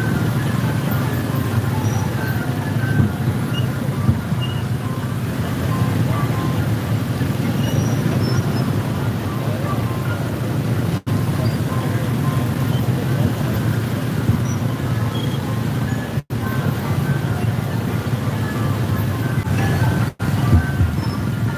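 Several motorbike engines running at low speed close together, a steady low hum, with the sound cutting out briefly twice.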